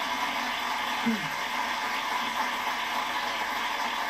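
Studio audience applauding: a steady wash of clapping that holds at an even level throughout.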